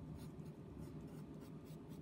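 Pencil lead scratching faintly on paper in a series of short, irregular strokes as a line is sketched.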